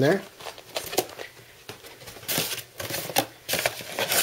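Cardboard packaging being handled: irregular rustles, scrapes and light clicks from the box and its flaps, in short bursts separated by pauses.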